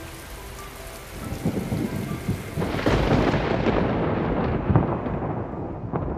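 Thunderstorm: rain with a long roll of thunder that builds about a second in, is loudest near the middle, and rumbles on as it fades.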